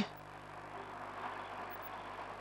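Faint background noise with a low, steady hum and no distinct sounds.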